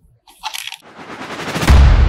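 A rush of noise that swells louder for about a second, then turns into a deep, heavy rumble near the end: the sound effect of a logo end card.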